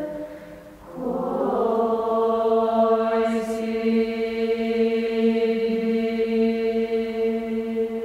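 Bulgarian women's folk choir singing unaccompanied. One chord dies away in the first second, then the voices come in again on a long, steady held chord.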